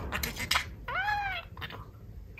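Pet budgerigar vocalizing: soft chattering, then about a second in one clear call that rises and falls in pitch.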